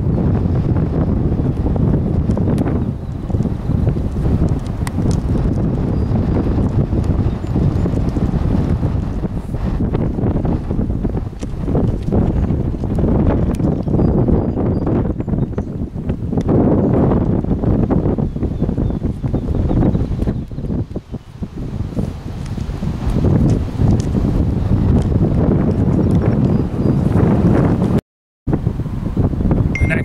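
Wind buffeting the microphone outdoors, a loud low rumble that swells and eases, with a brief dropout near the end.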